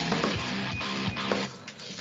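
A live rock band plays an instrumental stretch between sung lines, with drums and cymbals hitting over held guitar and bass notes. The sound comes through video-call audio and dips briefly near the end.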